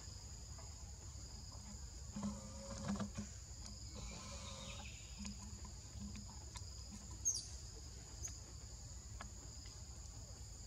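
Steady high-pitched buzzing of a forest insect chorus, with a few faint knocks and rustles and one short, high, falling chirp about seven seconds in.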